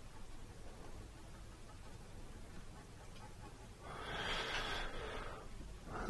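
Faint room tone. About four seconds in, a person takes one soft breath lasting about a second and a half.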